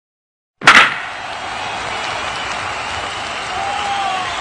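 Silence, then a single sharp, loud crack of an impact a little over half a second in, followed by a steady hiss of outdoor background noise with faint voices near the end.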